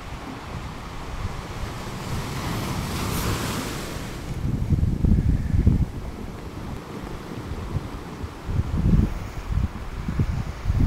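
Sea waves washing, with a hissing swell of surf in the first few seconds, and wind buffeting the microphone in gusts about halfway through and again near the end.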